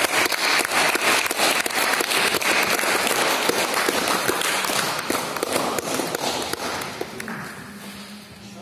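Spectators applauding at the end of a grappling match, a dense patter of many hands clapping that fades out over the last few seconds.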